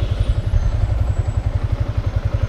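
The 2019 Yamaha Sniper 150's liquid-cooled 150cc single-cylinder four-stroke engine runs at low speed under way, with a rapid, even low pulsing. The rider reports a loud ticking while riding that he cannot place.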